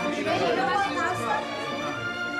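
Several people chattering at once, no words clear, over background music.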